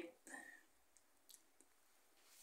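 Near silence, with a few faint, soft clicks spaced a fraction of a second apart.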